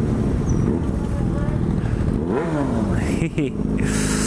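Yamaha FZ6 600cc inline-four engine with an aftermarket SP Engineering dual carbon exhaust, running steadily at low road speed, heard from the rider's position. Its revs rise and fall briefly about two and a half seconds in.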